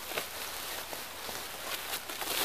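Soft rustling with a few faint crinkles from a corn sack and the rags inside it as they are shoved down tight into the sack.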